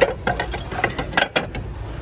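Ceramic plates and dishes clinking and knocking together as they are handled in a cardboard box: a quick run of sharp clicks, the loudest at the start, over a low steady hum.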